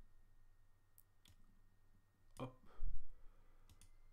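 A few faint, sharp computer mouse clicks, with a single low thump about three-quarters of the way through as the loudest sound.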